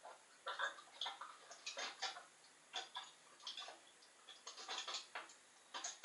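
Irregular sharp clicks and crackles, several a second in uneven clusters, an unexplained noise on the audio that puzzles the speaker.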